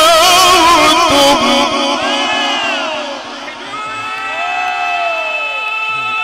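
A male Quran reciter chanting in the ornamented Egyptian mujawwad style, his voice held with a wide, even vibrato, ends a phrase about a second and a half in. Drawn-out voices of listeners then rise and fall, calling out in approval over a long held tone.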